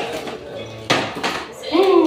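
A sharp click at the start and a louder one about a second in, then a small child's brief high-pitched voice near the end.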